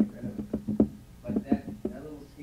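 A quick run of sharp knocks or taps at uneven spacing, about seven in two seconds, the loudest just before and about half a second after the one-second mark.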